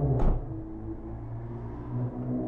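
Gas pump dispensing fuel through the nozzle: a steady hum with the rush of flowing fuel, and one short sharp click about a quarter second in.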